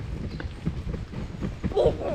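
Footsteps walking on stone paving, a steady run of short thuds about three a second, with a voice calling near the end.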